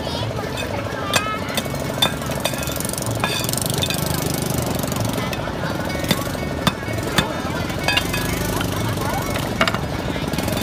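A cleaver strikes the rough shells of rock oysters held against a stone block, making irregular sharp knocks and cracks as the shells are chipped open. A steady, rapidly pulsing drone runs underneath.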